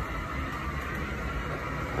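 Steady low mechanical noise of laundromat washing machines and dryers running.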